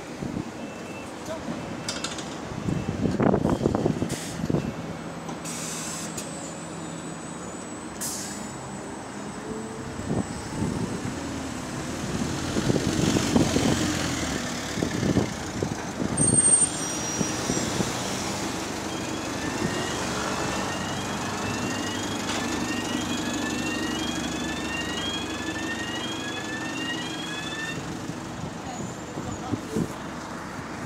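Single-deck bus engine pulling away from a stop, with louder surges of engine and air noise early on and again about halfway through, then a steady engine hum. In the second half there is a run of short rising chirps, about one a second.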